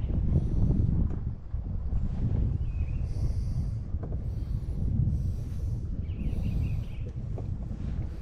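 Wind buffeting the microphone: a loud, uneven low rumble, with several short, higher rustles in the middle.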